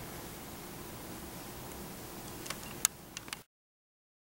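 Quiet room tone: a steady hiss with a faint low hum, broken by a few sharp clicks late on. The sound then cuts off abruptly into silence.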